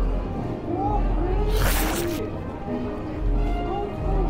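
Soft background music with faint held notes. About a second and a half in comes a brief crunch from a bite or chew of a sandwich with crisp lettuce.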